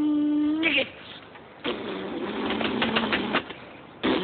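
A man ends a long, held vocal note, then blows a long, spluttering raspberry through his lips from about 1.7 s to 3.4 s.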